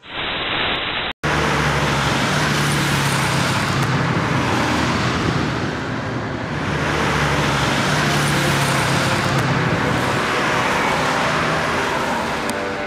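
Road traffic noise: a steady rush of passing vehicles with a low engine hum, swelling, dipping about halfway through and swelling again, after a short sound that cuts off about a second in.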